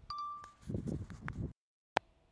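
A short, clear ringing tone like a chime or ping, followed by about a second of low rustling and clicks. The sound then cuts off abruptly into dead silence, and a single sharp click comes near the end.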